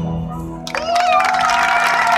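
Live reggae band holding a sustained chord through a lull in the song, with a crowd cheering; a voice swoops up into a long held note a little under a second in.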